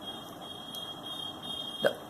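Quiet room tone: a steady hiss with a faint, steady high-pitched whine, and a brief short sound just before the end.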